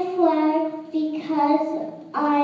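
A child's voice in long, sing-song held tones, several in a row with short breaks between them.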